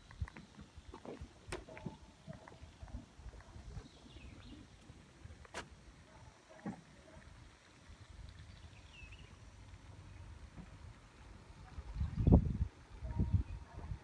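Faint wind noise on a phone microphone, a low rumble with a few light knocks, swelling into a louder gust about twelve seconds in.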